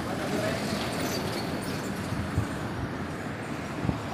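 A light cargo truck driving past on the road, its engine and tyre noise steady.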